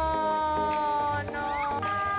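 A woman's voice drawing out a long, whiny "nooo" that falls slightly in pitch, with a shorter "no" after it. Background music with a steady beat runs underneath.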